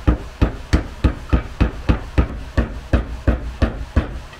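A small mallet tapping a new bushing into the pivot of a UTV's front A-arm: a steady run of light taps, about three to four a second.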